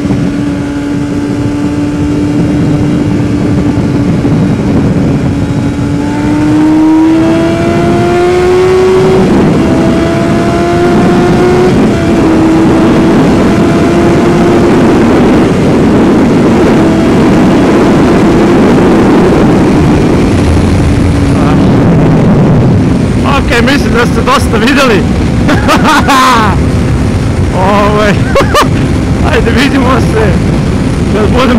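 Yamaha FZR600R inline-four sport-bike engine running at motorway speed, with heavy wind noise on the microphone. About seven to twelve seconds in the engine note rises under acceleration, drops back at each of two upshifts, then settles to a steady cruise.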